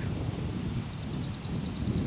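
Wind rumbling on the camcorder microphone, with a fast, high-pitched trill of evenly spaced ticks, about a dozen a second, starting about a second in.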